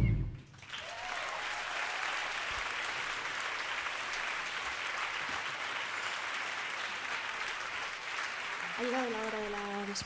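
Audience applauding after a song ends, the band's music cutting off in the first half-second and the clapping carrying on steadily. Near the end a single voice calls out over the applause.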